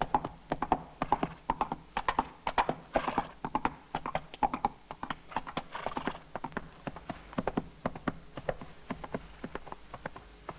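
A horse galloping over ground: a fast, rhythmic run of hoofbeats, loudest in the first half and growing fainter toward the end as it moves away.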